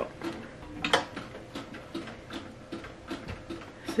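Manual clamshell heat press being clamped shut by its lever handle, with one sharp clack about a second in, followed by faint, even ticking at about three ticks a second.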